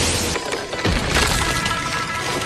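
Animated sound effects of rock and ground cracking and breaking apart, with a sharp crash a little before the middle, over background music.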